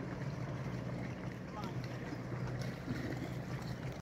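Motorboat engine running at a steady cruise, a constant low hum under the wash of water and wind.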